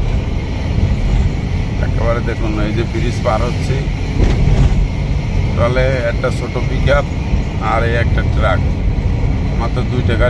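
Steady engine and road rumble inside a moving ambulance's cabin, with voices talking over it at times.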